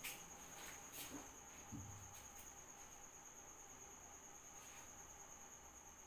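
Near silence: room tone with a faint, steady high-pitched tone, a few faint clicks and a soft thump a little under two seconds in.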